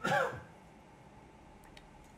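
A man briefly clearing his throat, one short sound with a falling pitch, followed by quiet room tone.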